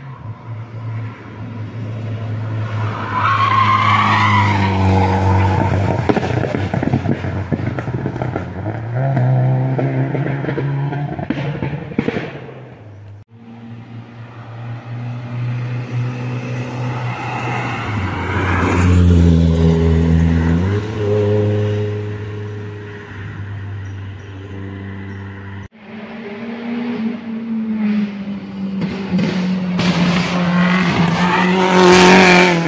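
Rally car engines revving hard as the cars climb the hill one after another, the pitch rising and falling through gear changes. The sound cuts off abruptly twice, at about thirteen and twenty-six seconds in, each time starting again with another car.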